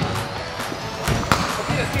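Stunt scooter hitting the ramp during a trick: a couple of sharp clacks from the wheels and deck about a second in, over background music.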